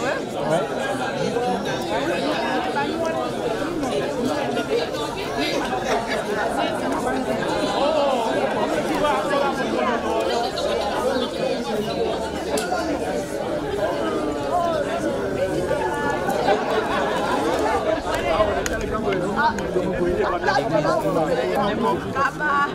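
Crowd chatter: many people talking at once in small groups, voices overlapping into a steady babble with no single speaker standing out.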